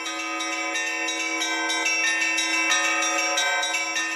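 Church bells ringing in a busy peal, many strikes overlapping into a continuous ringing, fading out near the end.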